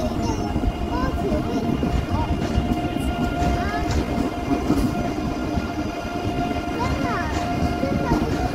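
ICE 3 high-speed train rolling along the tracks: a steady low rumble with a constant electric hum running through it, and indistinct voices in the background.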